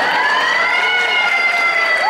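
Police siren sound effect: one long wail that rises at first, then slowly falls.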